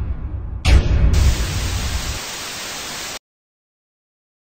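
A low rumble, then a sudden burst of loud, even hissing static about a second in that cuts off abruptly after about two seconds, leaving dead silence.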